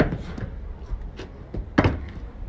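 Hands and sneakers slapping and scuffing on brick paving as a man moves on all fours: a sharp slap at the start, a few faint taps, then a louder slap near the end, over a low rumble.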